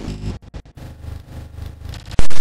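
Electronic intro sound design: a low synth drone under glitchy digital noise, cutting out briefly a few times about half a second in.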